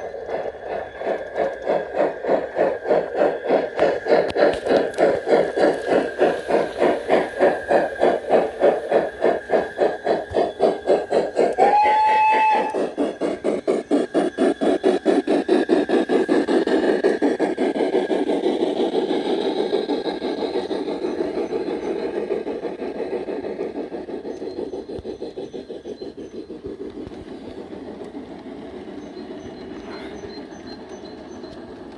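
LGB G-scale BR 95 model steam locomotive running with rapid, regular electronic steam chuffing from its sound module, plus one short whistle toot near the middle. The chuffing fades over the last third as the train pulls away.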